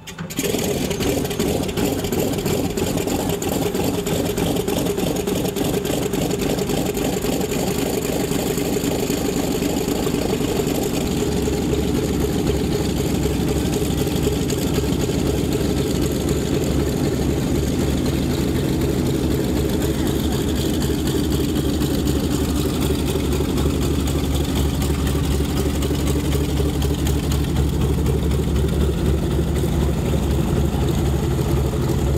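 A Mitsubishi A6M Zero fighter's radial engine running at low taxiing power, its propeller turning, with a steady, throbbing rumble. About ten seconds in, the low rumble grows deeper and louder.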